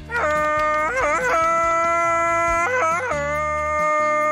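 A man's long, high Tarzan-style yell: held notes broken twice by quick yodelling warbles, over background music.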